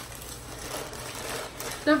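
Crumpled packing paper rustling and crinkling as it is pulled out of a shipping box.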